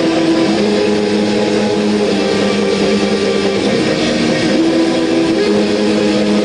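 A band playing live and loud, electric guitars holding long chords that change every second or two over a dense, continuous wall of sound.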